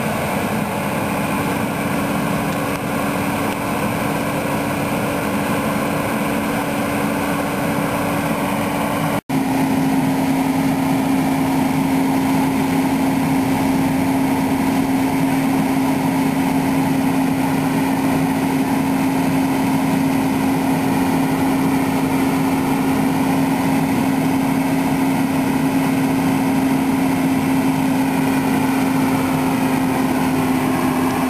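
Tracked hydraulic excavator's diesel engine running at a steady speed, a constant hum with no revving. The sound drops out for an instant about nine seconds in, then carries on a touch lower in pitch.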